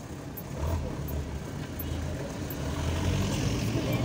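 Jeep engine running with a low rumble, heard from inside the jeep as it drives off slowly, growing slightly louder.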